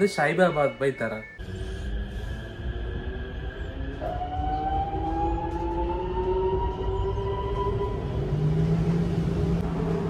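Namo Bharat (RapidX) electric train pulling out of a station, heard from inside the carriage: a low rumble with a motor whine that rises slowly in pitch as it accelerates, and a steady low hum joining near the end.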